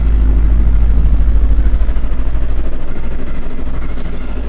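Steady low rumble or hum with no speech over it, loud and deep, with faint higher hum tones above it; it eases a little near the end.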